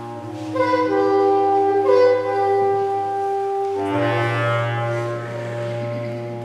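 Soprano saxophone playing slow, long-held notes, moving to a new note every second or two, over a steady low drone.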